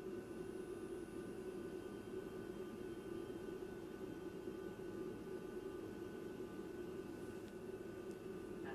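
Steady low hum and hiss of the space station cabin's ventilation fans and equipment, with a few faint steady tones above it.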